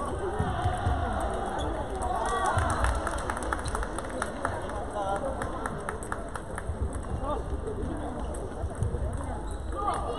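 Table tennis hall: quick clicks of celluloid-type balls off paddles and tables from rallies across the hall, busiest a few seconds in, under a background of voices.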